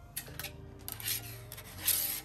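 Packaging and small accessories being handled and slid on a tabletop: three short rubbing, rustling scrapes, the loudest near the end.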